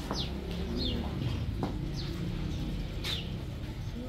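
Small birds chirping: short, high chirps that fall in pitch, about five of them, over a low steady background rumble.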